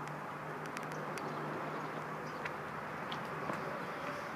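Steady outdoor background noise with a faint low hum and a few faint ticks.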